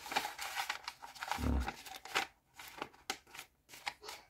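A paper coffee filter rustling and crinkling as it is fitted into a drip coffee maker's filter holder, with scattered light clicks and a soft knock about a second and a half in.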